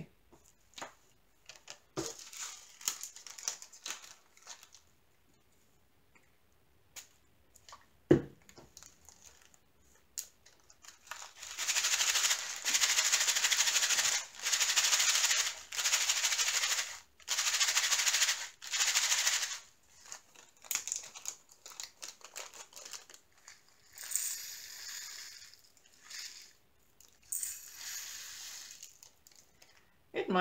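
Small resin diamond-painting drills rattling inside a plastic zip bag as it is shaken in four loud bursts of a second or two each, with two fainter bursts of rattling near the end. Before the shaking there are soft handling clicks and one sharp knock.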